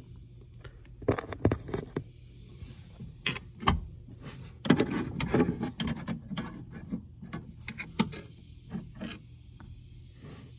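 Irregular metal clicks, clinks and scrapes from hand work at the brake pedal linkage under a car's dashboard, as the brake booster pushrod is worked free of the pedal.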